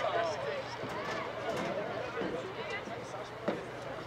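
Soccer match field sound: distant voices of players and spectators calling out across the pitch, with a sharp thud of a soccer ball being kicked about three and a half seconds in.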